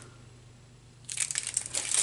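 Small clear plastic bags of metal charms crinkling as hands pick through and shuffle them, starting about a second in after a short quiet moment.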